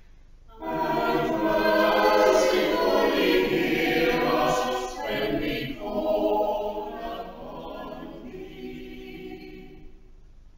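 Church choir singing together in parts, entering about half a second in and growing softer over the last few seconds.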